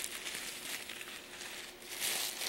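Tissue paper rustling and crinkling softly and continuously as a hand digs through it in a box.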